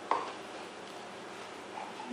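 Two raw eggs sliding out of a plastic measuring cup and dropping into wet cake batter in a stainless steel mixing bowl: one short soft plop right at the start.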